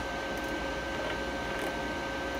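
Steady hum and hiss with a faint high whine: a MIG-200 inverter welder switched on and idling, its cooling fan running.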